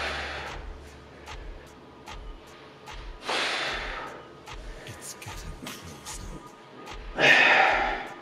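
A man's hard, forceful breaths, three of them about three and a half seconds apart with the last the loudest, as he strains through jackknife sit-ups. Faint background music with a steady beat runs underneath.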